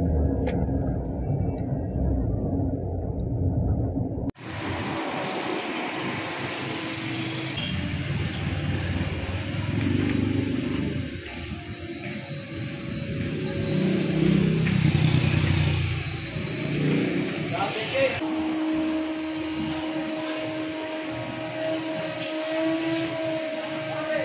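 Engine and road rumble heard from inside a small Toyota hatchback's cabin while driving, cut off suddenly about four seconds in. Then comes the background bustle of a car wash with people's voices, and a steady motor hum that sets in about two-thirds of the way through.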